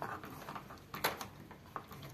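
A hand screwdriver turning the lower screw of a door-handle rose plate, giving a few faint small clicks, the clearest about a second in.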